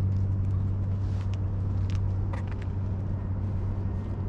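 A steady low motor hum, with a few brief scratches and taps as a kitten bats at a feather wand toy on concrete.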